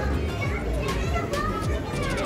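Background voices of people talking in a busy shop, some of them high like children's, over a steady low hum.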